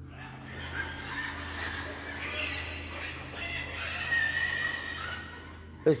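Farmyard animals calling, clucking like hens, with a longer wavering call about four seconds in, over a low steady drone.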